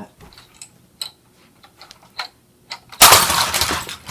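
A LEGO Saturn V rocket model thrown into a LEGO Hogwarts castle: about three seconds in, a sudden loud crash of plastic bricks clattering, dying away in under a second.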